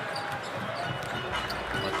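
Basketball arena game sound: a steady crowd murmur, with a ball being dribbled on the hardwood court.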